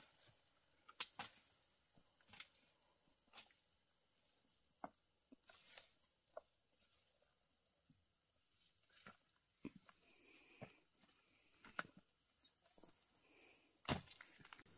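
Faint, scattered snaps and crackles of twigs and dry vegetation as someone moves on foot through thick undergrowth, with one sharper crack near the end. A thin, steady high tone runs underneath.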